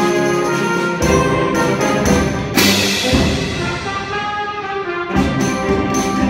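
A high school concert band playing: saxophones and brass hold full chords over percussion. About halfway through, a cymbal crash rings and fades, and sharp percussion strokes come back in near the end.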